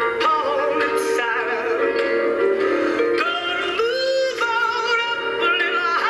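Music with singing voices holding long notes with vibrato, moving to a new note every second or so.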